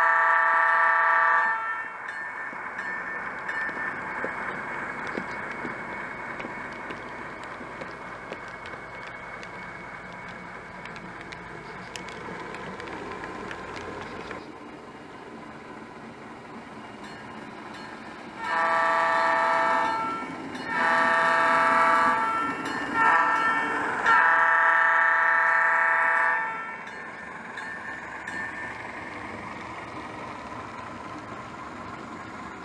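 Sound-equipped HO scale model diesel switcher locomotive sounding its horn. There is one long blast at the start, then a steady running sound, then from about two-thirds of the way in a long-long-short-long horn sequence, the standard grade-crossing signal.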